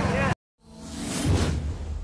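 A whoosh sound effect that swells up after a sudden cut, peaks about a second in with a low rumble beneath it, and tails off: the opening of a news channel's logo sting.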